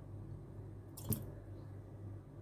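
Dried apricots dropped by hand into a glass mug of milk and seeds, with one short plop about a second in, over a low steady hum.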